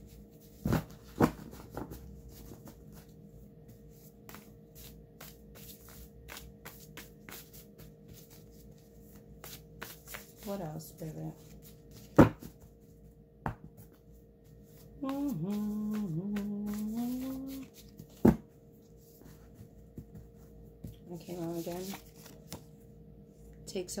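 A stack of paper index cards shuffled by hand: a long run of soft clicks and flutters, with two sharp snaps about twelve and eighteen seconds in. About fifteen seconds in, a woman's voice holds a short pitched vocal phrase for two or three seconds.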